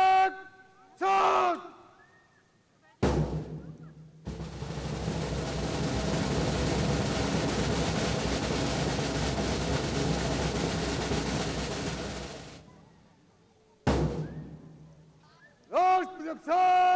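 A drum roll lasting about eight seconds, swelling and then fading, opened by a single beat and closed by one sharp stroke near the end. Short loud drawn-out calls come right at the start and again at the very end.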